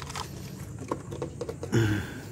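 Scattered light clicks and taps of small metal car parts being handled and set down on a plastic engine-bay panel. A short grunt-like voice sound comes near the end.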